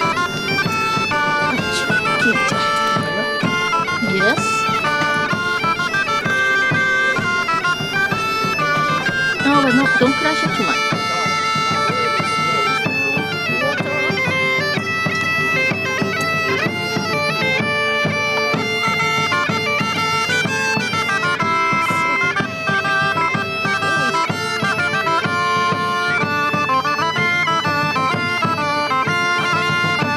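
Bagpipe music: a melody of held notes over steady, unbroken drones.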